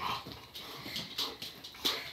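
Dog whimpering and whining, wanting to get up where the cat is, with a few light clicks in between.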